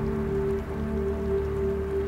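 Background music score: a single note held steadily over a low sustained drone.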